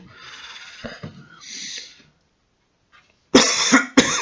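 A man coughs loudly near the end, a harsh burst that runs on past the end, after a couple of seconds of faint breathing and a short silence.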